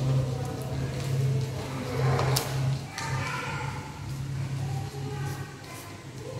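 Coloured paper being folded and creased by hand, with a sharp crisp crackle about two seconds in, over a steady low hum.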